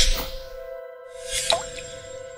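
Short logo-animation music sting: an airy whoosh at the start and another about a second and a half in, over two steady held tones.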